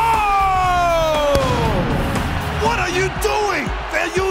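A man's voice shouting a long, drawn-out "goal!", the pitch falling over about two seconds, over background music.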